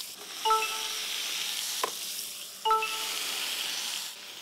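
Meat sizzling steadily on a hot electric grill plate. Two short beeps come about two seconds apart, with a single click between them.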